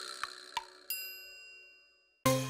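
The end of a children's song tailing off into a few light bell-like dings; the last, about a second in, rings out with several high tones and fades away.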